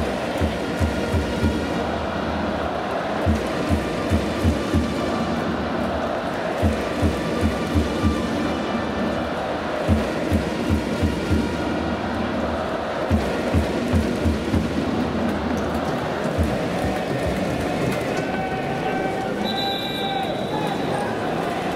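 A baseball cheering section playing in the stands: a drum beats in short runs of about four to six strikes, roughly every three seconds, under trumpets playing a fight song over a steady crowd din.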